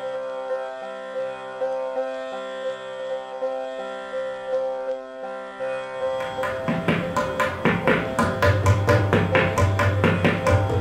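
A steady melodic drone of held notes, then from about six seconds in a pair of tabla drums played with quick hand strokes over it.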